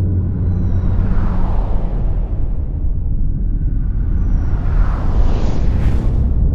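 Cinematic title sound design: a deep, steady rumbling drone with whooshes that swell about a second in and again near the end, the last rising brightly.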